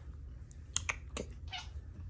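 A few light clicks and taps, about half a second to a second in, as a hand places a hair tie into a cat tree's cubby.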